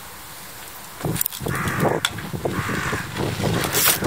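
A crow cawing twice, about a second and a half and two and a half seconds in, over low rolling noise as a trials bicycle moves across the gravel; a sharp click comes near the end.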